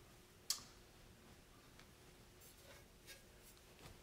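Near silence: room tone, with one sharp click about half a second in and a few faint ticks later.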